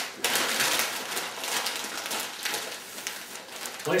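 Plain packing paper rustling and crinkling as two sheets are folded by hand around a glass decanter, a run of quick crackles that is busiest in the first half and softer toward the end.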